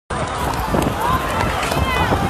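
A street crowd's voices, many people shouting and calling at once with no single clear speaker, over the footsteps and handling rustle of a phone carried quickly through the crowd.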